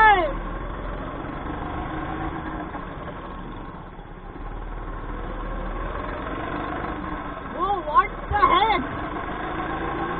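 Go-kart engine running steadily while driving on the track. Its note swings briefly up and down in pitch near the start, and again in a few quick swings about eight seconds in.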